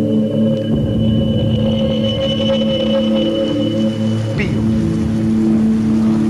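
Film score of sustained, droning held chords, with a thin high held note over them for a couple of seconds in the middle.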